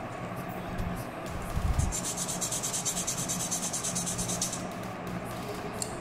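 A plastic model-kit part being sanded by hand on a sanding stick, with quick, closely repeated rubbing strokes that are clearest from about two seconds in until past the middle. The part is being levelled so that plastic glued on top will sit flush.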